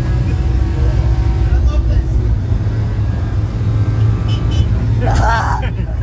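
Barkas B1000 van's engine running while driving, heard from inside the cab: a steady low drone mixed with road noise. A brief voice comes in near the end.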